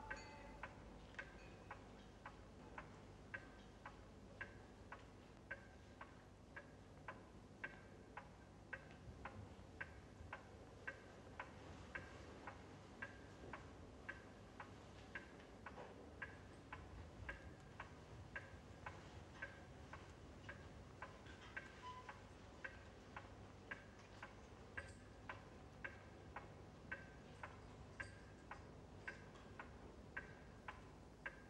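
A clock ticking faintly and evenly, roughly two ticks a second, over a low steady background hiss.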